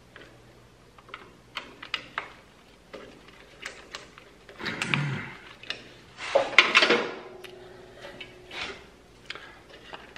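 Hands working on tractor wiring with small hand tools: scattered light clicks and rattles of wires, meter probe and pliers, with a louder rattle about six and a half seconds in.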